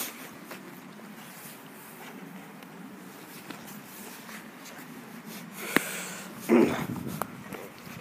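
Quiet handling noise and footsteps of someone walking over leaf litter, with one sharp click about six seconds in and a brief vocal sound soon after.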